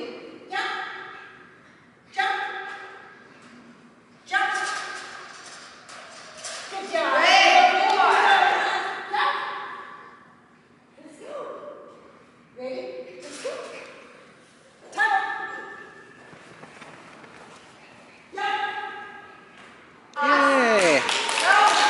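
Short spoken calls from one voice, coming every couple of seconds with a longer run of talk near the middle, each echoing in a large, bare hall.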